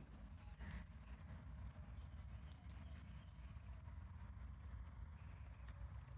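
Near silence: faint outdoor background with a low steady rumble and a soft tap under a second in.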